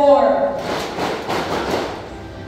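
A voice over the hall's loudspeakers trails off on a falling note at the start, then a short burst of audience applause in a large hall follows, about a second and a half long.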